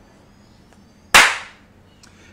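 A single sharp, loud smack about a second in, dying away within half a second.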